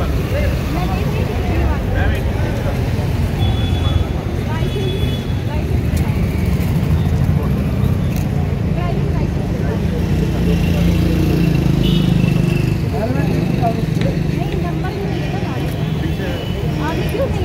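Busy street sound: several people talking over one another, with motor vehicle engines and traffic running steadily underneath. An engine hum grows louder for a few seconds about two-thirds of the way through.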